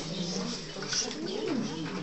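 Indistinct murmur of several people talking quietly at once in a small meeting room, with no single voice standing out.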